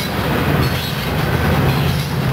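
Steel coal hopper cars rolling past, their wheels running on the rails, with the steady low drone of a BNSF SD70ACe diesel-electric locomotive, the train's rear distributed power unit, growing stronger from about half a second in as it draws near.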